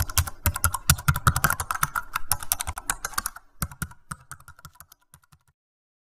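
Keyboard typing sound effect: a fast run of key clicks that pauses briefly about three and a half seconds in, then thins out and stops about five and a half seconds in.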